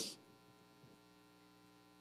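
Near silence: faint steady electrical hum in the room tone.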